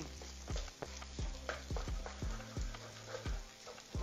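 Wooden spatula knocking and scraping in a pan as rice and egg are stir-fried, about two or three knocks a second, over a steady sizzle.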